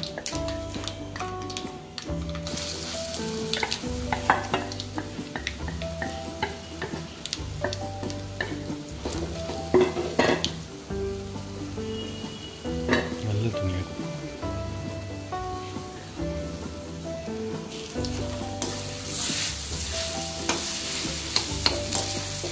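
Ground dal paste frying in hot oil in a kadai, sizzling steadily, with a metal spatula scraping and clicking against the pan as it is stirred. A quiet instrumental melody plays underneath.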